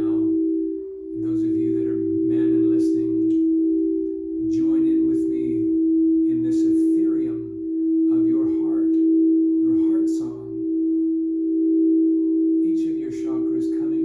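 432 Hz-tuned crystal singing bowls sounding a sustained, steady pair of tones as their rims are circled with mallets, swelling and fading every second or two. A man's low voice tones and chants wordless syllables over them, in short phrases with breaks.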